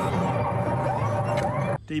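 Loud film soundtrack from an action clip: a dense rumbling mix with wavering, siren-like glides, which cuts off abruptly near the end.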